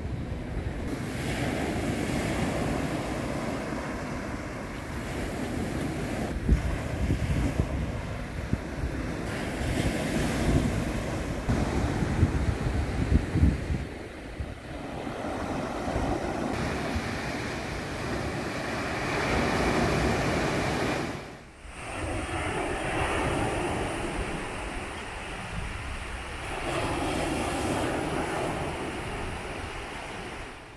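Sea surf breaking and washing up on a beach, with wind gusting on the microphone. The sound dips briefly about two-thirds of the way through.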